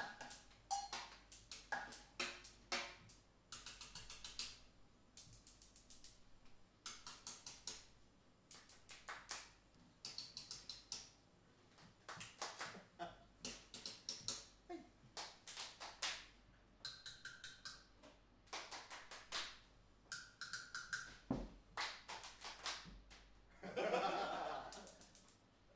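A sparse live percussion passage: quick runs of sharp taps on small percussion, some with a short ringing pitch, together with hand claps, in bursts of a few strokes with short gaps between. Laughter breaks in at the very end.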